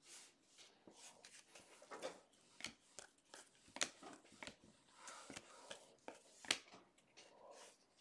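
Faint, scattered clicks and light rustles of trading cards (2020 Donruss Optic football cards) being flicked through and handled by hand.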